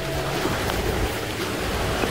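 Steady rush of falling water from a mountain waterfall and its creek, a continuous even noise.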